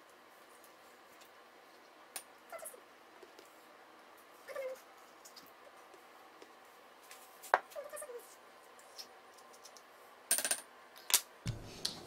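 Sparse light clicks, taps and scrapes of a metal spoon scooping ripe avocado out of its skins into a basalt molcajete, with the emptied skins set down on the counter. A few sharper knocks near the end as a chef's knife and the wooden cutting board are handled.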